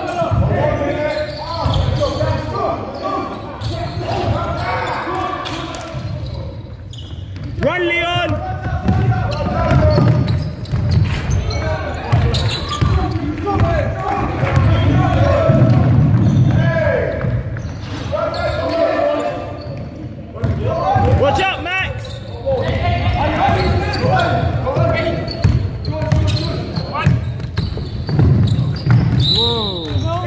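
Basketball game in an echoing sports hall: the ball bouncing on the wooden court amid players' and spectators' indistinct shouts.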